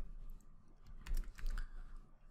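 Computer keyboard typing: a short run of keystrokes as a word is typed.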